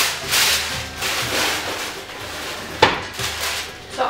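Sheet of baking parchment rustling and crinkling as it is unfolded and shaken out, with one sharp crackle near the end.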